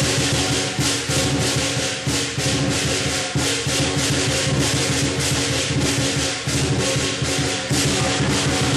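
Lion dance percussion ensemble playing: cymbals crashing on a fast, steady beat, about three to four strokes a second, over the big drum and a ringing gong.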